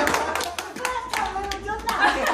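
Hand clapping from a few people, irregular sharp claps, with a high-pitched, helium-squeaky voice singing or laughing over them.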